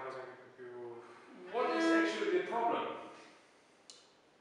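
Cello bowed in a few sustained notes, the longest held about a second near the middle, then fading. The tone is "not really clean" and the response "a bit slow", from strings sitting too deep in their bridge notches.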